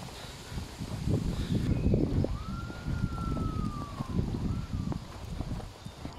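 Wind buffeting the microphone of a handheld camera while walking. About two seconds in, a faint single high tone sounds for about two seconds, holding steady and then slowly sinking, with a brief echo of it just after.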